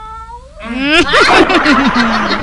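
A whining cry that swells about half a second in into a loud, cat-like yowl, rising sharply in pitch and then breaking into harsh, falling wails.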